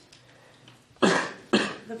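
A person coughs twice in quick succession, about a second in, the two coughs roughly half a second apart.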